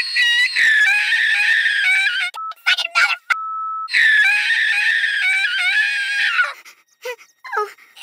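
High-pitched cartoon character voice of a clay-animated bear: two long, wavering squealing notes, with a short steady beep-like tone between them, dying away near the end.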